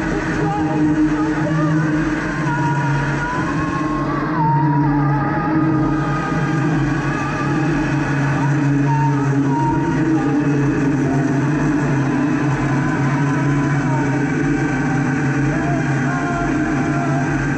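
Live experimental noise music from electronics and effects: a dense, unbroken drone with steady low layers and wavering higher tones over it.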